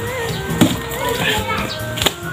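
Background music with a melody over it. About half a second in, a single dull thump as a large cardboard box is dropped onto a mat on the ground.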